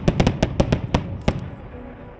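Aerial fireworks bursting in a rapid string of sharp bangs, about eight in just over a second, then echoing away.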